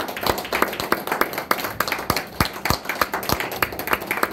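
Small club audience applauding: many separate hand claps, irregular and fairly sparse rather than a dense roar.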